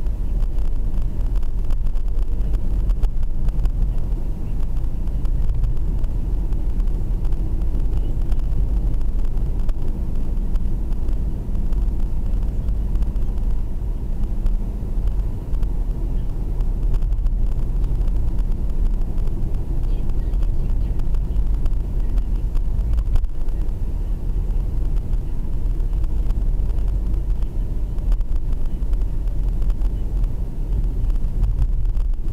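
Steady low rumble of engine and road noise inside a moving Mercedes-Benz car's cabin, picked up by a dashboard camera while cruising.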